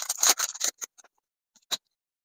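Foil wrapper of a Pokémon TCG booster pack being torn open and crinkled: a quick run of crackly rustles for about the first second, then one faint click near the end.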